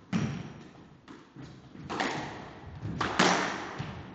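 Squash ball being struck back and forth: about six sharp hits of racket and ball on the court walls, each ringing in the court's echo, the loudest a little after three seconds in.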